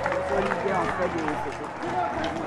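Crowd of spectators chattering, many voices talking over one another.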